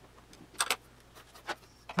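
A few light metallic clicks and taps from a combination square and steel calipers being handled against a pine board, over faint room noise.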